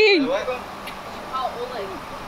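People talking, with a faint steady low hum underneath.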